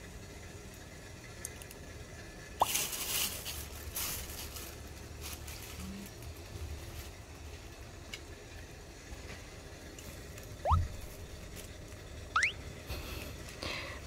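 Plastic bag crinkling in two short spells a few seconds in as the greens inside are handled, then a soft low bump and a few faint, brief rising squeaks later on.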